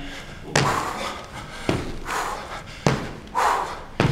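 Sneakers landing on a wooden gym floor during barbell jump squats: three thuds a little over a second apart, with hard breaths between them.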